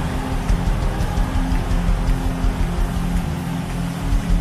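Slow worship music of long held chords over a deep bass. Under it, a congregation of many voices prays aloud at once as a steady murmur with no single voice standing out.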